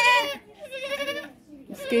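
A ram bleating three times, each call a short quavering cry about half a second long.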